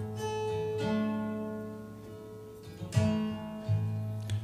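Acoustic guitar played alone between sung lines: chords strummed and left to ring and fade, with a fresh strum about three seconds in.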